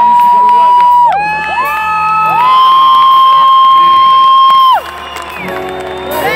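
Concert crowd cheering, with a fan close to the microphone letting out loud, long, high whooping shouts, the longest held for about two seconds. The shouting stops near the end, leaving the band's instruments playing more quietly.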